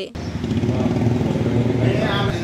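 Steady low engine-like rumble of background noise, with faint voices under it and a man starting to speak near the end.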